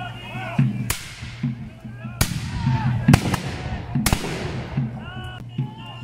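Four black-powder musket shots fired one after another at uneven intervals, each a sharp crack trailing off in echo.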